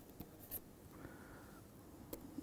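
Stylus writing on a digital tablet: two soft taps in the first half second, then faint scratching over low room hiss.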